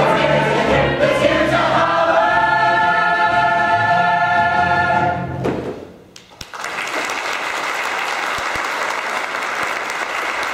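A stage musical's ensemble singing in chorus with accompaniment, holding a final chord that cuts off about five and a half seconds in. A second later the audience breaks into applause that keeps going.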